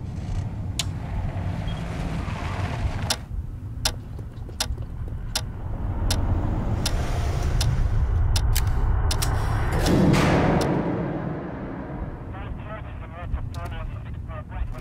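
Trailer sound design: a low, steady rumbling drone punctuated by sharp percussive hits that come closer and closer together, building to a loud swelling whoosh about ten seconds in. A fast fluttering rattle follows near the end.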